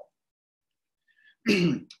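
A man clears his throat once, about one and a half seconds in, after a near-silent pause.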